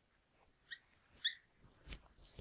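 Marker pen squeaking faintly on paper while writing, two short squeaks about a second apart.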